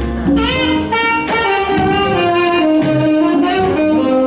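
Live jazz band playing an instrumental passage: a drum kit keeping a steady beat with cymbals under a gliding melodic lead line.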